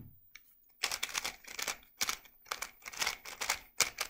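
A GAN 356 Air SM 3x3 speedcube being turned by hand: a quick run of plastic clicks as its layers are turned, starting about a second in, with one louder click near the end.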